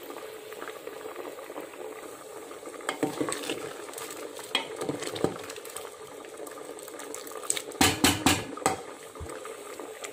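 Liquid bubbling at a simmer in an aluminium pot, with a ladle stirring it. A quick run of knocks against the pot comes about eight seconds in.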